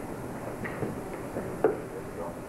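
A single sharp knock about one and a half seconds in, after a few fainter ticks, over a steady hiss of old videotape and room noise.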